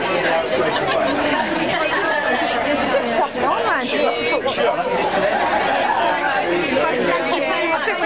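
Crowd chatter: many voices talking at once close by, overlapping so that no single speaker stands out.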